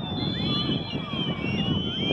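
Spectators at an outdoor football match talking and calling out together, a steady murmur of voices with high, thin whistle-like tones over it.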